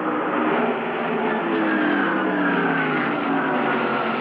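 NASCAR Winston Cup stock cars' V8 engines running at race speed, a loud steady engine note whose pitch falls over the last couple of seconds as the cars go by.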